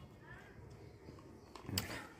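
Quiet room tone, broken near the end by one short rustle of hands handling objects on the bed.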